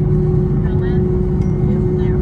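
Airbus A321 cabin noise while taxiing: the engines and airframe make a steady low rumble with a constant hum, heard from inside the cabin over the wing.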